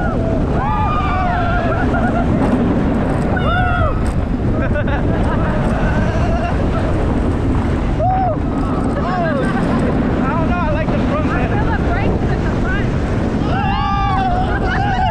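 Wind rushing over the microphone and a steady low rumble from a moving roller coaster, with riders screaming and whooping in rising-and-falling cries, more of them near the end.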